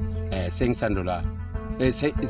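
A man speaking in short phrases over steady background music with a low hum beneath.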